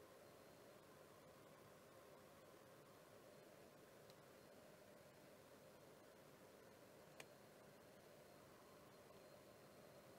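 Near silence: faint room tone, with one short click about seven seconds in.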